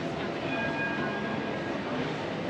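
Steady city street noise with a high-pitched squeal: two steady tones held together for about a second, starting about half a second in.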